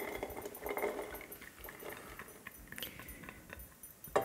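Chopped onion scraped from a bowl into a stainless-steel saucepan with a spatula: faint scrapes and light irregular taps of the spatula against the bowl and pan.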